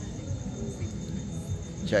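Crickets chirping steadily, a thin high note, over a low background rumble of the street.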